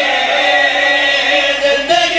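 A group of men's voices chanting together into microphones, holding one long note: the chorus of a zakir's elegiac majlis recitation.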